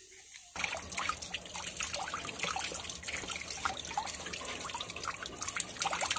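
Tap water running and splashing over a tilapia held in the hand as it is rinsed clean. It starts suddenly about half a second in and goes on steadily, with many small spatters.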